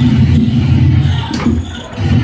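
Loud, steady low rumble, with a single sharp knock about one and a half seconds in.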